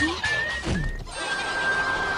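Cartoon animal cries from an animated short's soundtrack, heard as the anteater is set upon by a swarm of ants: a few short, squeaky calls that glide in pitch in the first second, then a single high tone held to the end.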